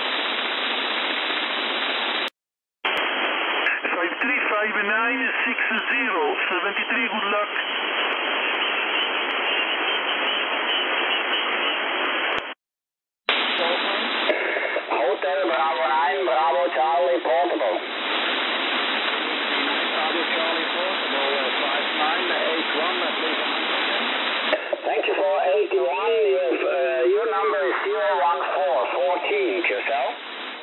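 Lower-sideband receive audio from an RS-HFIQ HF SDR transceiver: steady, narrow, telephone-like band hiss with the voices of amateur radio operators fading in and out of it. The audio drops out briefly twice, about two seconds in and about twelve seconds in.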